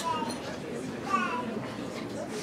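Indistinct voices talking in a room, with a short spoken phrase about a second in over a low murmur.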